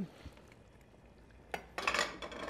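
Quiet at first, then about a second and a half in, a single clink followed by a short run of metal kitchenware clattering against a cooking pot.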